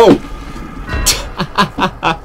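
A man's startled shout and laughter as a carbonated ramune bottle foams over on opening, with a short hiss about a second in.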